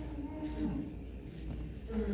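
A man's low, wordless hum-like vocal sound, held for about a second with a sag in pitch partway through, then trailing off. It is the vocalizing of a nonspeaking speller while he spells on a letterboard.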